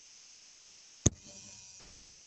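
Faint room hiss with one sharp click about a second in, followed by a faint brief rustle.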